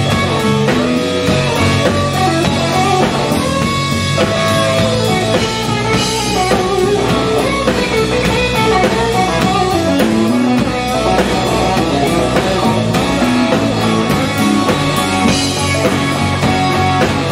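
Live blues-rock band playing an instrumental passage: an electric guitar plays a melodic lead line over electric bass and a drum kit, with cymbal crashes about six seconds in and near the end.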